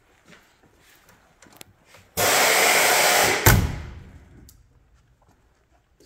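About two seconds in, a loud rushing hiss that lasts about a second ends in a single heavy thump, which rings out over the next second: the door of a 1957 Ford Fairlane convertible being shut.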